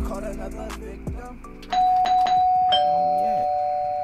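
Hip-hop music plays for the first second and a half or so and then stops. A doorbell chimes ding-dong: a higher note about 1.7 s in and a lower note about a second later, both ringing on and slowly fading.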